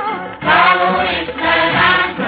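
Old Hindi film song recording: several voices singing together over the orchestra in two loud phrases, the first starting about half a second in.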